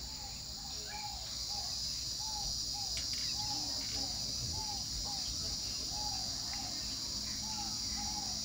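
Steady high-pitched drone of insects, with a short rising-and-falling call repeated about twice a second, typical of a bird calling.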